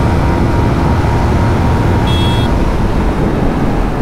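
Steady wind rush over the microphone with the Yamaha MT-15's 155 cc single-cylinder engine running at high revs in sixth gear, at about 130 km/h. A brief high tone sounds about halfway through.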